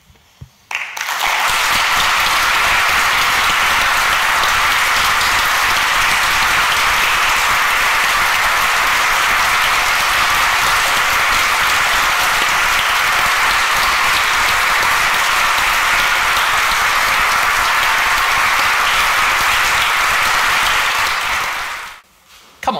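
A large seated audience applauding: a few scattered claps, then full, steady applause from about a second in that dies away near the end.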